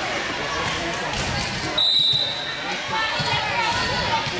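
Spectators' voices and ball thuds echo through a gym during a volleyball rally. About two seconds in, a referee's whistle sounds once, a steady high note lasting just under a second.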